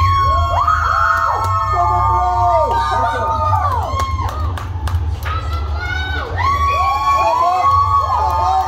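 A group of children shouting and cheering in long, high yells, many voices overlapping, with a steady low rumble underneath. A few sharp clicks come near the middle.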